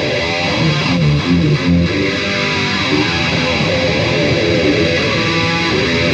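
Charvel electric guitar with EMG pickups played through distortion, riffing with a quick run of notes about a second in.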